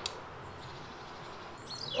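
Quiet outdoor woodland background with faint bird chirps near the end, and one brief faint click at the very start.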